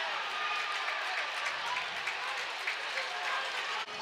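Ballpark crowd applauding after an out, an even wash of clapping and crowd noise with faint voices mixed in. It breaks off briefly near the end.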